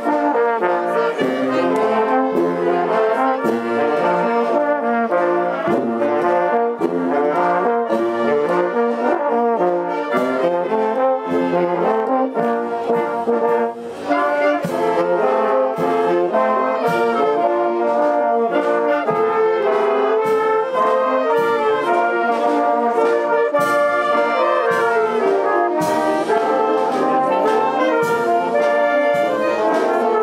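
Village wind band (filarmónica) of brass and woodwinds playing: tubas, trombones, horns, saxophones and clarinets, with the low brass carrying the bass line under the melody.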